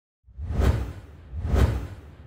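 Two whoosh sound effects from a logo intro animation, each swelling and fading, about a second apart, with a deep low rumble under them.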